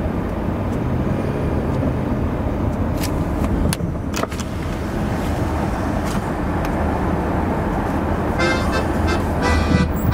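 A car driving along, with steady low road and engine noise and a few sharp knocks about halfway through.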